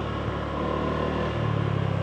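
Motorbike engine running as the bike rides along, heard from the rider's seat; the engine note gets louder about one and a half seconds in.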